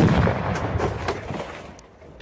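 An explosive target blowing up after a rifle shot: a sharp blast right at the start, then a deep rumble that fades away over about a second and a half.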